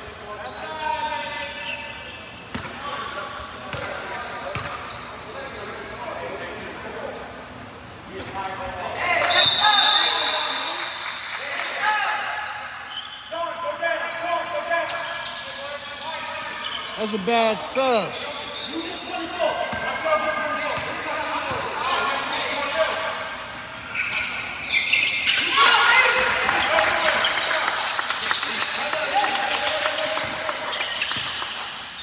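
Basketball bouncing on a hardwood gym floor, under voices echoing in a large gym. From about 24 seconds in the noise gets busier as play resumes.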